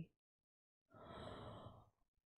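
A woman's quiet, audible breath of shock, lasting about a second and starting after a short silence.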